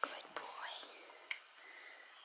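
A person whispering softly, with a couple of small clicks.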